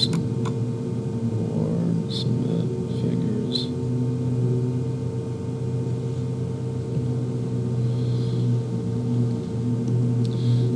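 Steady low electrical hum in a small room, with a few short clicks in the first few seconds.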